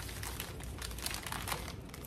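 Packing paper rustling and crinkling in irregular crackles as it is rolled and folded by hand around a candle jar.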